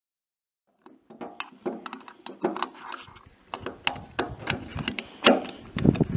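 Desert Tactical Arms SRS bolt-action rifle being handled at the bench: a run of irregular clicks and knocks starting about a second in.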